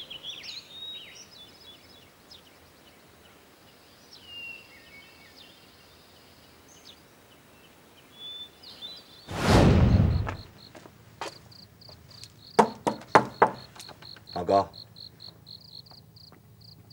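Faint chirping at first, then a loud whoosh lasting about a second, after which a cricket chirps in steady pulses, about three a second. Several sharp knocks or clicks come near the end.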